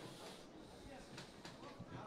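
Very faint room tone of an event hall with a low crowd murmur and a few soft knocks.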